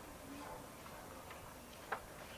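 Faint background hiss with one sharp click just before the end and a few fainter ticks.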